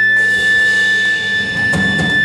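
Live rock band of electric guitars, bass and drum kit playing loudly, the dense band sound swelling in just after the start, with a couple of drum hits near the end. A steady high tone runs underneath throughout.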